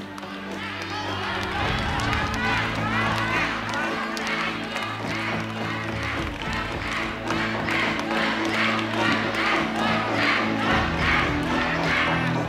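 Suspense music with steady low held tones under an audience of many voices shouting and cheering, the crowd noise building louder over the seconds.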